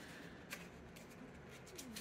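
Faint rustling of paper instruction leaflets being handled and unfolded, with a short soft click about half a second in and another near the end.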